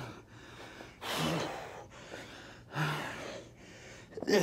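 A man breathing hard through push-ups: two heavy exhales about a second and a half apart, each starting with a short low grunt.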